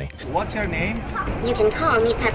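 Voices and chatter echoing in a crowded airport terminal hall. Near the end, a Pepper humanoid robot speaks in its high, synthetic voice.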